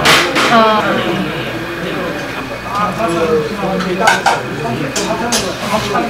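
A metal spoon clinking against stainless steel noodle bowls as sauce is spooned into them, with a few sharp clinks, the loudest at the very start. Voices talk between the clinks.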